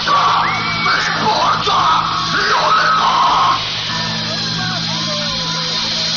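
Shouts and yells over the steady hum of a rock band's amplifiers on a live stage. The shouting stops about three and a half seconds in, and after that the amplifier hum continues with a few faint stray tones.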